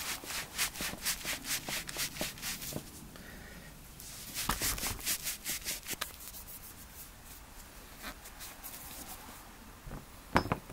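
Cloth rag rubbing back and forth on a motorcycle shock absorber's strut body, wiping off oil-caked dirt, in quick rasping strokes of about four a second with a couple of short pauses.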